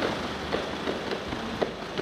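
Footsteps on a paved walkway, about two steps a second, over steady background noise.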